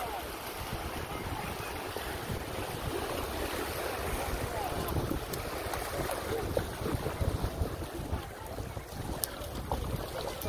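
Small surf washing over a flat sandy shore, with wind buffeting the phone's microphone in a steady low rumble.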